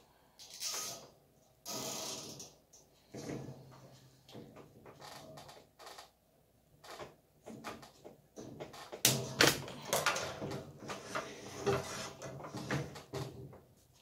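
Handling sounds of a nylon zip tie being worked tight around black wire grid panels and then cut with scissors: short scraping bursts early on, then a run of sharp clicks and light rattles of the metal wire in the second half.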